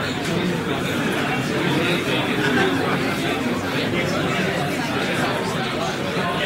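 Pub crowd chatter: many voices talking over one another at once, a steady hubbub with no single speaker standing out.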